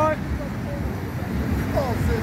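Road traffic: a steady low rumble from cars on the street, with a short bit of voice near the end.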